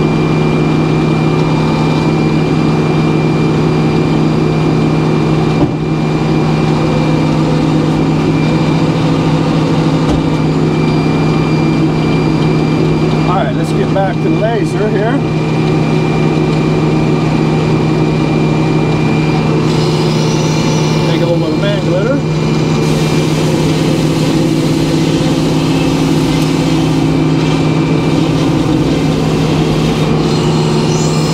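Hydraulic circular sawmill running with a steady drone, its large blade sawing boards off a white pine cant.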